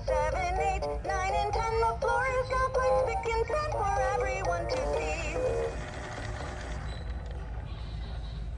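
LeapFrog toy vacuum playing its electronic counting song in a synthetic sung voice, the tune stopping about six seconds in.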